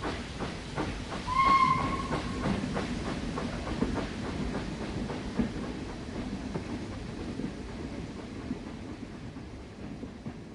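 Steam train sound effect: a whistle blows once, about a second in, then the train runs on with a steady clatter of wheels on the rails, slowly fading away.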